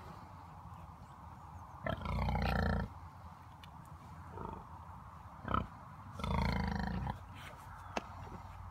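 Pigs grunting: two loud, drawn-out grunts about a second long, one about two seconds in and another past six seconds, with shorter grunts between.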